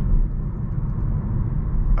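Steady low road and tyre rumble inside the cabin of a Hyundai Kona Electric on the move. The driver finds this outside noise a little high for the car.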